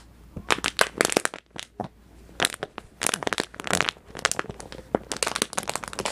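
A dog biting and mauling an air-filled plastic bottle knotted inside a sock, the plastic crackling and crunching in sharp, irregular crackles, with a brief lull about a second and a half in.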